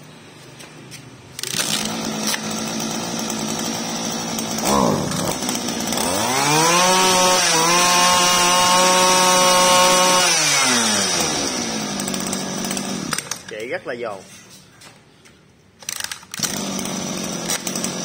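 Hitachi CG26EF backpack brush cutter's small two-stroke engine pull-started about a second and a half in, idling, then revved up, held at high revs for a few seconds and let back down to idle. Near the end it drops away briefly, then runs again.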